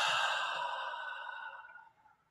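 A man's long, breathy exhale, the drawn-out tail of a voiced "ah" sigh, fading steadily and ending just before the close.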